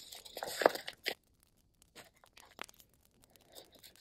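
Paper and sticker sheets being handled: a rustle lasting about a second, loudest near its end, then a few light taps and soft rustles.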